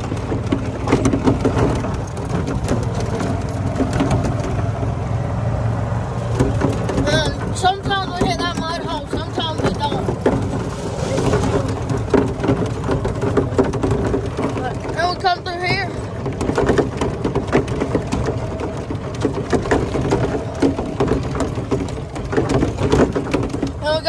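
E-Z-GO golf cart driving over a dirt track: a steady running rumble with the body knocking and rattling over bumps. A voice is heard briefly twice, about a third and about two-thirds of the way through.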